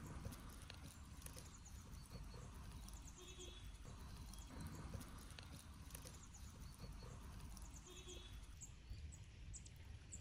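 Faint outdoor ambience with small birds chirping in short, high twittering runs. A lower patterned call comes twice, about five seconds apart, over a soft low rumble.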